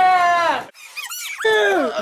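A person's high-pitched, falling cries, two of them with a short gap between, and a quick run of sharp squeaks in the gap.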